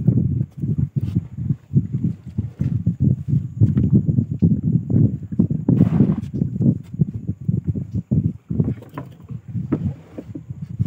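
Wind buffeting the microphone aboard a small wooden boat being pushed along with a bamboo pole: a choppy low rumble, with scattered light knocks and a brief hiss about six seconds in.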